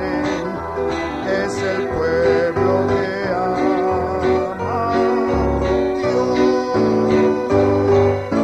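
Music: the instrumental closing passage of a Spanish-language Christian worship song, with guitar over low bass notes.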